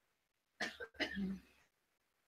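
A person's two short coughs, about half a second apart.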